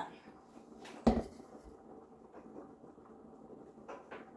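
Mango juice poured from a plastic blender jug into a small glass, with a single sharp knock about a second in, the loudest sound here, as jug and glass handling ends.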